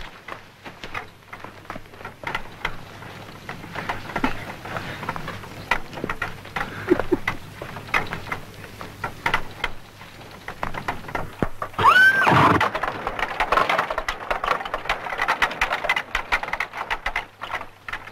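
A horse being driven on: steady clip-clop of hooves with knocking and rattling, then about twelve seconds in a sharp crack as the horse is struck, followed at once by one loud rising neigh, the loudest sound here.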